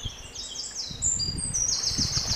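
Small birds chirping: high, short, falling chirps that quicken into a fast, even trill near the end, over a faint low rumble.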